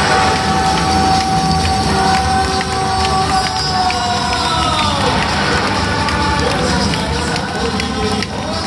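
Ballpark music over crowd noise in a domed stadium, with a long held note that slides downward about five seconds in.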